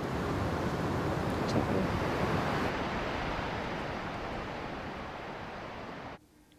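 A steady rushing noise, with no pitch and no rhythm, that loses its highest hiss about three seconds in and then slowly fades.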